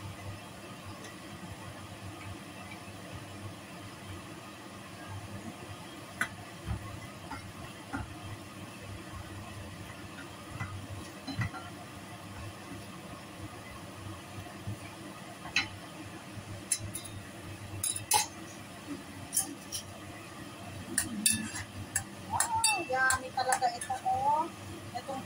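Sliced garlic frying in a pan and being stirred with a wooden spatula: scattered clicks and knocks of the spatula against the pan over a steady low hiss. The clicks come more often in the second half, with a glass pot lid clinking near the end.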